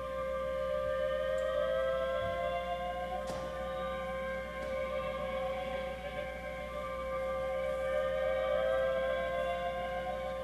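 Bowed violin holding a steady drone note while a second note slides slowly upward in pitch, twice: once between about two and three seconds in and again over the last few seconds.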